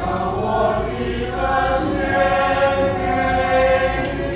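Mixed church choir singing a hymn, holding long sustained chords that move from one chord to the next.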